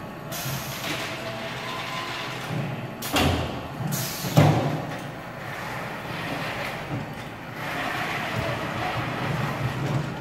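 A FIRST Robotics competition robot's electric drive and lift motors running as it raises a stack of plastic totes and drives it onto a plywood platform, with several knocks and thumps, the loudest about three to four and a half seconds in.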